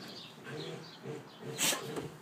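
Siberian husky puppies play-growling as they wrestle: a string of short, low grumbling growls about every half second. A sharp hissing burst about one and a half seconds in is the loudest sound.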